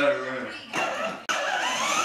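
A voice sounds briefly at the start. Then, from just over a second in, a battery-powered ride-on toy motorcycle starts suddenly with a whine that wavers and glides in pitch.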